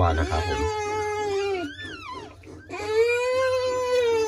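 Bamboo rat giving two long, drawn-out pitched calls, the second slightly higher, with a few short falling high squeaks between them.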